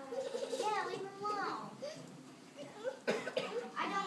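Children's voices speaking, heard from across a hall, with a short sharp noise about three seconds in.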